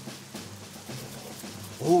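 Soft, steady hiss of palms rubbed together to imitate the sound of rain.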